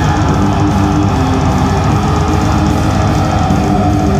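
Live heavy metal band playing loud: electric guitar over drums, with a held note that begins to sink in pitch near the end.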